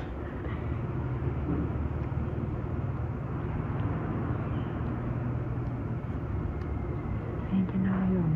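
Steady low background hum, with faint muffled voices in the background.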